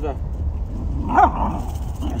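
A small terrier barking during play, with a short bark at the start and a louder one about a second in.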